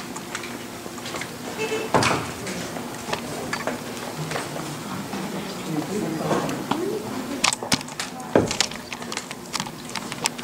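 Handling noise from a camera being picked up and moved, with several sharp knocks and rustles, under the indistinct voices of people talking in a room.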